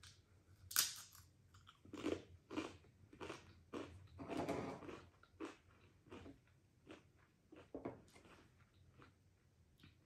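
A wavy Pringles chip bitten with a sharp crunch about a second in, then chewed with a run of crunches that grow softer and sparser toward the end.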